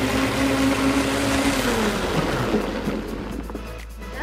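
Bike-driven blender running: the Blendtec jar's blade churning a smoothie with a steady whir and hum, the hum's pitch falling away about one and a half seconds in, then the sound grows quieter.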